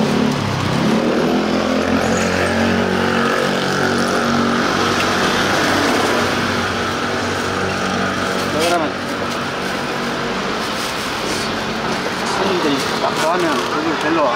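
A motor vehicle's engine running close by, a steady drone with a slight drift in pitch. It starts suddenly and drops a little in level about two-thirds of the way through.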